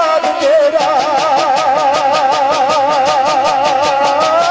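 Folk music instrumental passage: a sustained melody wavers in a fast, even vibrato over a quick, steady drum beat.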